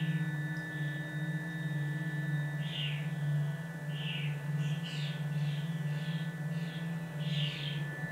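Ambient background music: a steady low drone under sustained high tones, with short soft high notes that come more often from about three seconds in.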